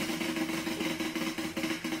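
A tabletop prize wheel spinning fast, its pointer clicking rapidly and evenly against the pegs on the rim.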